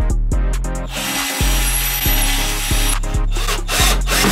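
Cordless drill running for about two seconds from about a second in, with shorter bursts near the end, drilling into a wardrobe door to fit a door handle. Background music with a steady beat plays underneath.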